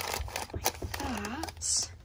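Paper instant-oatmeal packets being handled and slid about on a wooden cabinet shelf: light rustling with scattered small taps and clicks.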